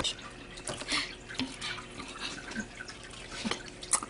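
Water dripping in a turtle tank: a scatter of small irregular plinks and ticks.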